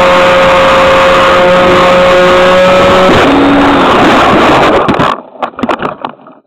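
Onboard sound of a hand-launched RC fixed-wing plane's motor and propeller running at a steady high whine, with wind rushing over the microphone. A little past three seconds in the pitch drops, and about five seconds in the sound cuts off suddenly as the plane comes down in soft ground with a prop strike, followed by a few short knocks and rustles.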